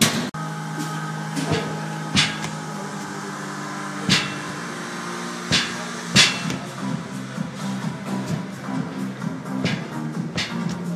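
Background music with a steady beat, and about six sharp clanks of metal dumbbells knocking on the gym floor as a man works through man makers: plank, rows and presses on the dumbbells.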